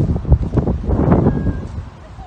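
Wind buffeting the microphone: a loud, gusty low rumble that eases off near the end.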